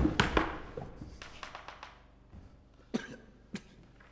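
A cluster of sharp knocks and thuds that dies away over about two seconds, then two short sharp clicks about half a second apart near the end.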